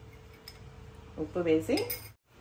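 A metal spoon clinking against a small glass bowl of salt as salt is scooped out, with a few light clinks near the end.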